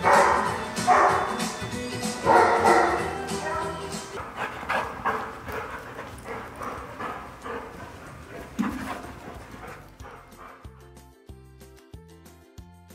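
A dog barking several times while being given cookies, with the loudest barks in the first three seconds and softer ones after, over background music that is left on its own near the end.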